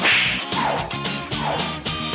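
A sharp whip-like swish right at the start, then a few short rasping cuts about a second apart as scissors chop through denim jeans, over background music with a steady bass.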